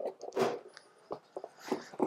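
Quiet handling of a plastic camera payload as it is pressed into its bay in the drone's body: light scraping and rustling, with a single sharp click about a second in.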